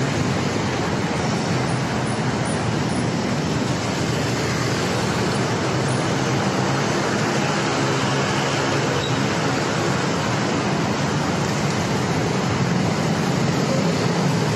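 Steady city traffic noise heard from a moving motorcycle: a low engine hum under a constant rush of road noise, with no distinct events.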